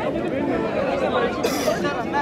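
Crowd of spectators at an outdoor wrestling ground chattering, many voices overlapping, with a short burst of hissing noise about a second and a half in.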